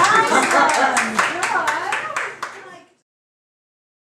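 A few listeners in a small room clapping after a piano piece, with voices talking over the applause. The sound cuts off abruptly about three seconds in.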